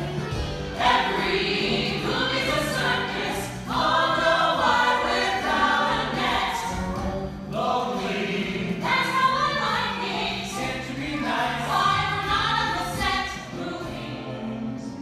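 A mixed stage ensemble of men and women singing together, with instrumental accompaniment underneath.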